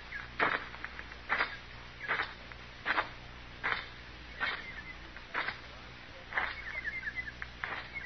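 Radio-drama sound effect of slow footsteps, a little more than one step a second. Birds start chirping near the end.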